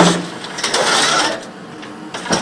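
Scrap steel clanking and scraping against the jaws of an MC430R hydraulic scrap shear as it works into a scrap pile. A sharp clank comes right at the start, then a stretch of grinding scrape with a few knocks, which dies down in the last half second.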